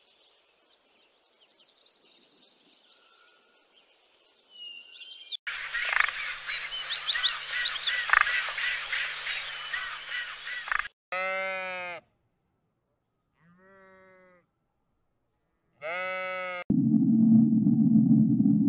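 A string of separate sounds: several seconds of busy noise with short high chirps, then three short bleat-like animal calls, each falling in pitch, the middle one faint. Near the end a loud low rumble starts suddenly.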